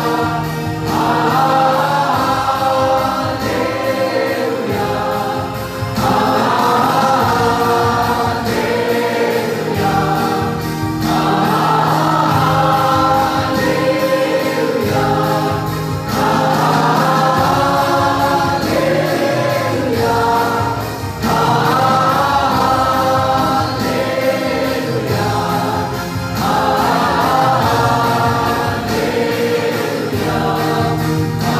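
Mixed choir of men and women singing a Hallelujah hymn, accompanied by an acoustic guitar, in sung phrases of four or five seconds with brief gaps between them.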